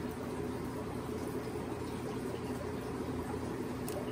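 Steady water bubbling and low hum of aquarium equipment in a fish room, with one faint click near the end.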